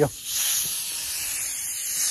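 Compressed air hissing steadily from a worn quick-connect air-hose coupling: the coupling is leaking and needs replacing.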